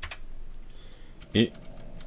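A few keystrokes on a computer keyboard as a short line of code is typed, with a brief spoken word about one and a half seconds in.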